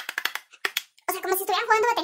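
A quick run of about ten sharp light taps, which sounds like a makeup brush rapped against an eyeshadow palette, the aggressive tapping used to knock off excess powder. Her voice follows from about a second in.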